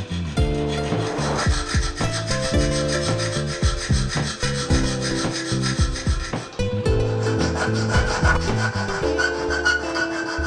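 Hand file rasping on a small steel nut-built part held in a vise, in quick repeated strokes. Background music plays along with changing steady notes.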